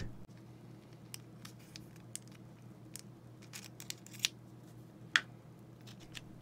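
Faint, scattered small clicks and scrapes of a tiny flathead screwdriver's metal tip working against a CR2032 lithium coin-cell battery and the plastic battery holder of a car key fob as the battery is pried out, with two slightly louder clicks near the end.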